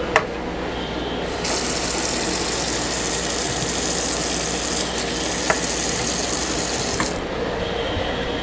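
Kitchen faucet running onto a foam paint brush in a stainless steel sink, rinsing off wet paint. The water comes on about a second and a half in and is shut off near the end, with a few light clicks along the way.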